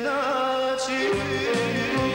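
Bosnian folk-pop song with the band playing: a male voice holds a long, wavering, ornamented note, and a bass line comes in about a second in.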